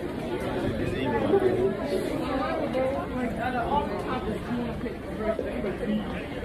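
Indistinct voices of several people talking at once: background chatter.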